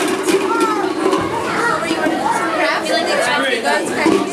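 Many children's voices chattering and calling out together, overlapping and indistinct, with a hall echo and a few light clicks among them.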